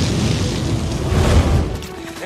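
Flamethrower firing a long jet of flame: a loud, heavy rush that swells about a second and a half in and then dies away near the end, with music underneath.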